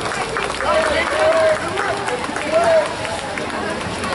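Raised voices shouting and calling out short calls during a water polo game, over a background of distant voices; the loudest calls come about a second in and again past the middle.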